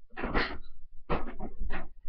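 Pillows swishing and thudding against bodies in a pillow fight: three short, noisy bursts, the first the longest, then two more about a second in and near the end.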